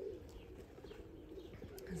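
Faint bird calls: soft low cooing with a few brief high chirps.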